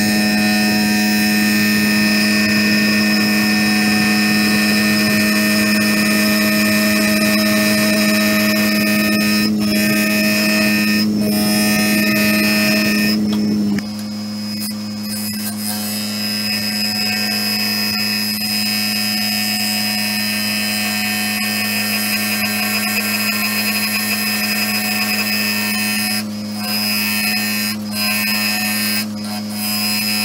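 A wood lathe's motor runs with a steady hum while a gouge cuts a spinning bowl blank of madrone wood cast in resin, giving a continuous cutting hiss. The hiss breaks off briefly several times as the tool lifts away. About fourteen seconds in, the overall level drops a little and the hum changes.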